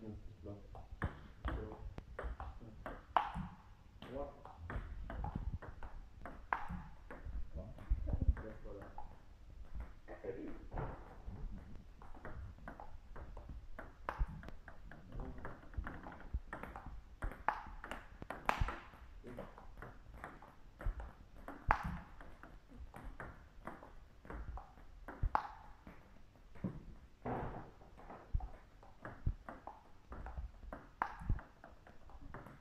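Table tennis rally: the plastic ball clicks off the bats, one of them faced with a short-pimpled forehand rubber, and bounces on the table in quick, irregular succession. The play is pushes and attacking openings.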